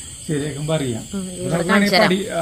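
A man talking, with a steady high-pitched insect drone, typical of night crickets, running faintly beneath his voice.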